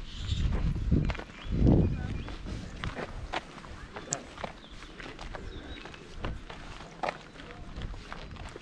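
Footsteps with voices in the background, and two loud low thuds in the first two seconds.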